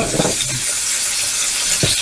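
Chicken pieces with onion and garlic sizzling in hot oil in a frying pan, soy sauce being spooned in; a steady hiss, with a single knock near the end.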